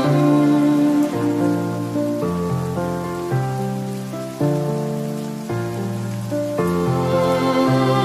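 Slow, calm instrumental music, held low notes stepping to new ones about once a second, over a steady hiss of falling rain.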